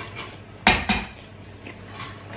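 Kitchen bowls knocking together as one is taken out of a low cupboard: a sharp clatter, then a smaller knock just after.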